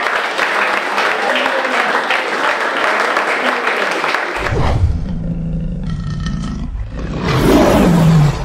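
A room of people applauding for about four seconds. Then a low rumbling sound effect, which builds into a loud lion roar falling in pitch near the end: the animated lion-logo sting.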